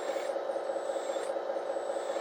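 A 1/14-scale radio-controlled Caterpillar road scraper's electric and hydraulic drive running: a steady hum with a fine rapid flutter and a faint high whine as the machine starts to creep forward in sand.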